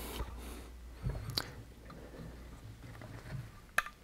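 Faint handling noise from a Honda CBR600RR cylinder head being turned over in the hands, with a sharp click about a second and a half in and a couple more near the end, over a low steady room hum.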